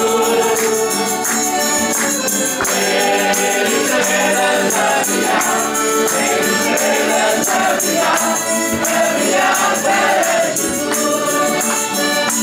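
A group of voices singing a folk song together, accompanied by accordions and guitars, with a tambourine keeping the beat.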